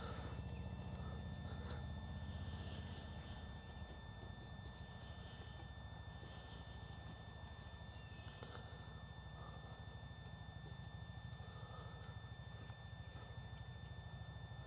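A few faint, soft scuffs of a paintbrush working oil paint on a palette, over a steady low outdoor rumble.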